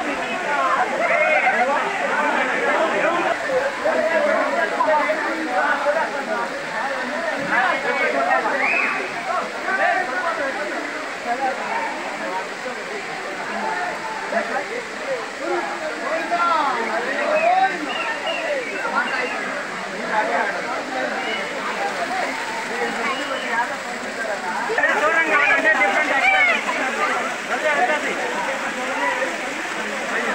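Many people talking and calling over each other, a crowd's chatter, over the steady rush of a waterfall, with the voices louder near the end.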